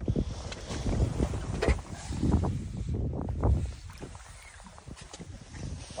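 Wind rumbling and buffeting on a phone microphone, with bumps and rustles of handling, on an open boat. It is gusty for the first few seconds, then dies down.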